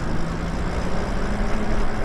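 Wind rushing over the microphone and tyre noise from an e-bike riding along a paved street, with a faint steady low hum.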